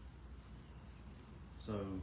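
Steady, high-pitched trilling of crickets in the background, heard through a pause in the talk. A man's voice says one word near the end.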